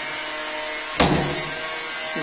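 A single sharp click about a second in as a lever door handle's rosette is pressed home and snaps into place, over a steady hum.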